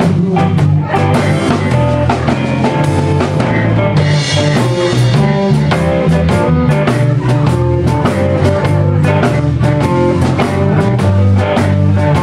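Live electric blues band playing at full volume: electric guitar, bass guitar and drum kit, with a hand-cupped harmonica wailing over them.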